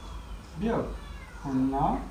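A man's voice, two drawn-out spoken syllables, about half a second in and again near the end.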